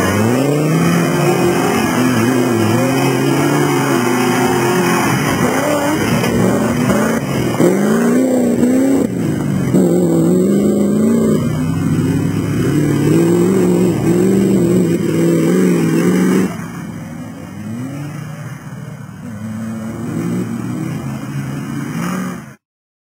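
Land Rover 90 off-road competition vehicle's engine revving hard and repeatedly, its pitch rising and falling, under heavy load as it claws through deep mud. About two-thirds of the way through the sound drops noticeably in level and stays quieter.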